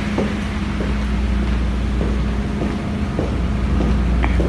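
Soft footsteps on a hard floor, about one every half second, over a steady low hum.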